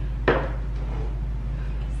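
A single sharp knock about a third of a second in, as a glass candle jar is set down on a hard surface, over a steady low hum.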